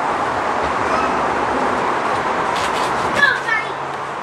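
Indistinct background chatter of children's voices, steady throughout, with a short louder voice fragment about three seconds in.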